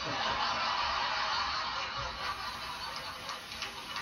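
Studio audience laughing as a crowd, loudest for the first two seconds and then dying down, heard through a television's speaker.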